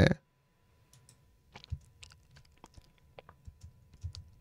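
Faint, irregular clicking of computer controls, about a dozen short clicks scattered at uneven intervals.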